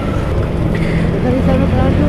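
Steady low rumble of vehicle engines and road noise while riding a motorcycle close behind a bus in traffic, with faint voices mixed in.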